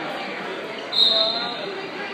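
A referee's whistle gives one short, sharp blast about a second in, signalling the start of a wrestling bout, over the chatter of spectators in a gymnasium.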